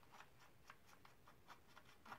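Near silence with a few faint, light clicks and rubs: abrasive sharpening discs being unscrewed by hand from the spindle of a Work Sharp E2 kitchen knife sharpener.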